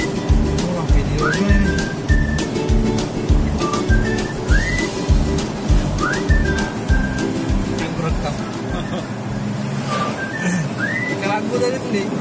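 Background music with a steady beat of about two thumps a second and a high, whistle-like melody of short rising slides and held notes. The beat drops away about eight seconds in while the melody carries on.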